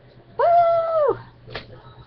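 A single high-pitched call lasting under a second: it rises into a held, steady pitch and drops away at the end. A short click follows.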